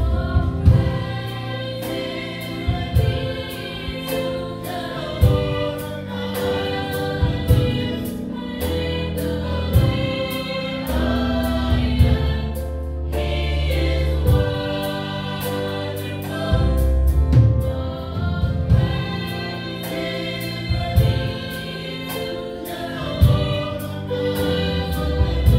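A gospel praise team of mostly women's voices singing together in harmony into microphones, backed by an instrumental band with drums keeping the beat.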